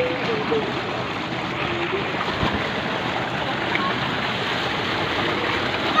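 Steady rush of water pouring from a tubewell's discharge pipe into a concrete tank and churning there.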